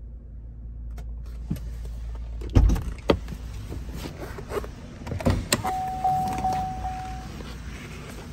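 Knocks and thumps of handling and movement inside a 2014 Chevrolet Camaro's cabin, the loudest a low thump about two and a half seconds in. Then a single steady electronic chime tone with slight pulses sounds for about a second and a half.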